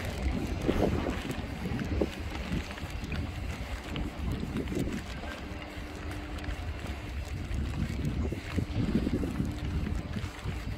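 Wind buffeting a phone's microphone, a steady low rumble with a few faint knocks from handling or footsteps.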